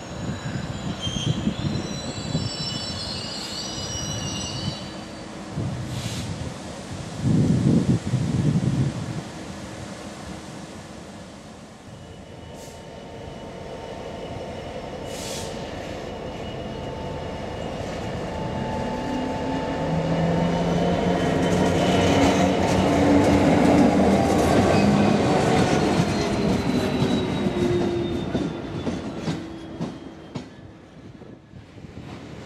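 Freightliner Class 66 diesel locomotive hauling a freight train, its two-stroke V12 engine building steadily as it draws near and loudest through the last third before easing slightly. A loud burst of wind rumbles on the microphone about seven seconds in.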